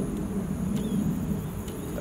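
Outdoor background: a steady low rumble of distant traffic with a faint, high, steady insect drone over it.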